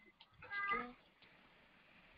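A single brief, faint pitched cry about half a second in, lasting under half a second; otherwise near silence.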